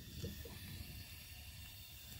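Lit oxy-acetylene torch burning with a faint, steady hiss, its flame set rich as a reducing flame for brazing copper tubing.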